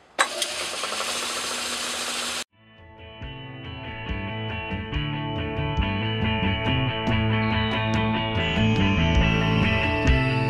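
An Atlas Craftsman lathe switched on with a click and running for about two seconds, cut off abruptly; background music then fills the rest.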